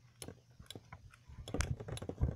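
Two Beyblade spinning tops clacking against each other in their stadium: a string of sharp irregular clicks that grows louder and denser in the second second as the tops start to wobble.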